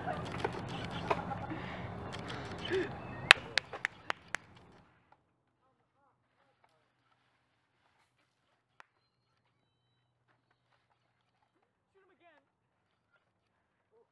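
Rustling and scuffling of people running through leafy undergrowth, with voices, then a quick run of sharp clicks. After that the sound drops away to near silence.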